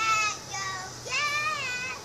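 A young girl singing wordlessly in a high voice: a short held note at the start, then a longer drawn-out note that wavers slightly, from about a second in.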